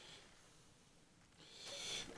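Near silence, then a soft breath drawn in, rising over the last half second.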